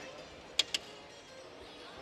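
Two sharp clicks in quick succession, over the steady background noise of a large exhibition hall.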